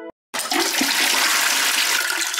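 A toilet flushing: a loud rush of water starts suddenly about a third of a second in, just after a synth tone cuts off.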